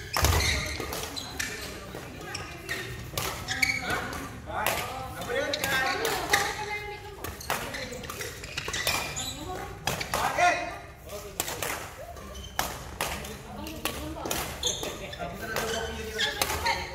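Badminton rally in a large indoor hall: sharp racket hits on the shuttlecock and players' footsteps on the court floor, repeated at irregular intervals and echoing in the hall, over background voices.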